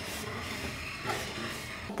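Large terracotta plant pot, on its saucer, being slid across a ceramic tile floor: a steady scraping.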